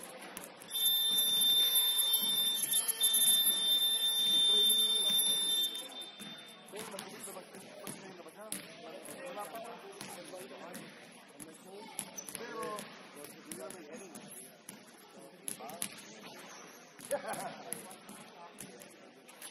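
Basketball scoreboard buzzer sounding one loud, steady, high-pitched tone for about five seconds, starting just under a second in and cutting off suddenly. Afterwards, voices echo around the hall, with scattered sharp knocks.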